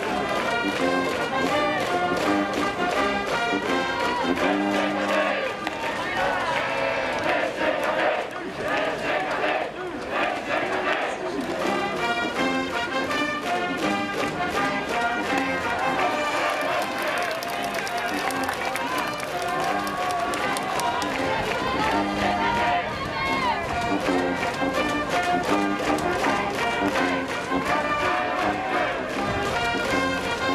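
School brass band in the stands playing a cheering tune without a break, with a crowd of supporters' voices chanting along.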